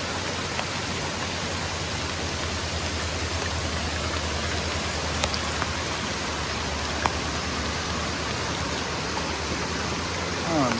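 Steady hiss of heavy rain falling through trees and onto leaf litter, blended with the rush of a flooded creek running as brown rapids. A few sharp ticks stand out, the clearest about seven seconds in.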